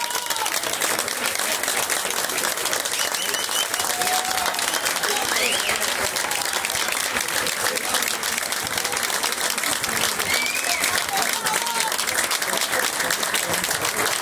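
A small group of people applauding steadily, with voices calling out over the clapping.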